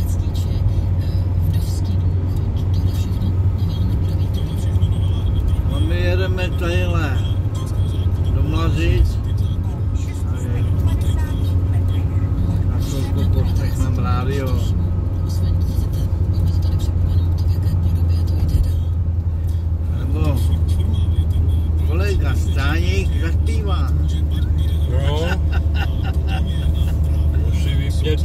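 A car in motion, heard from inside the cabin: a steady low rumble that holds throughout.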